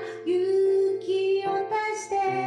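A woman singing a slow song, accompanying herself on piano, with long held notes.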